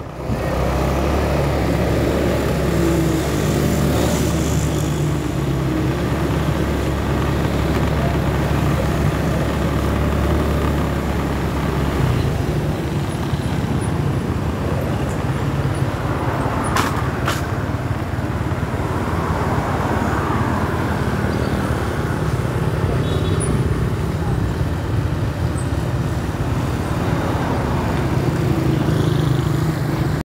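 Steady vehicle engine and road noise heard from a moving vehicle in street traffic. A heavy low rumble eases about twelve seconds in, and there is a brief click near seventeen seconds.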